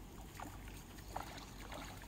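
A hooked tilapia splashing at the water surface as it is pulled in on a fishing line: a few short splashes, the loudest a little past the middle.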